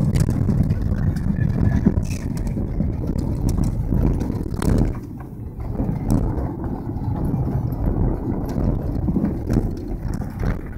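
A car driving on a rough dirt road, heard from inside the cabin: the engine and tyres rumble on the unpaved surface, with frequent small knocks and rattles from the bumps.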